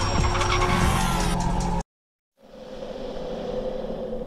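Logo-sting sound effect of a vehicle, layered over music, cutting off suddenly just under two seconds in. After a brief silence a steady electronic drone swells and then begins to fade.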